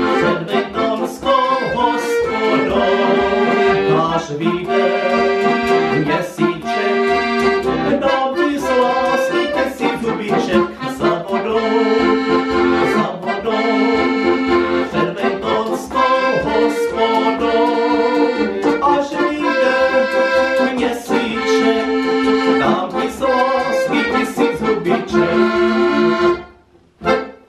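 Piano accordion played solo: a right-hand melody over left-hand bass and chord accompaniment, with a steady beat.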